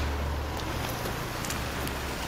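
Outdoor background noise: a steady low rumble and even hiss, with a few faint clicks of camera handling.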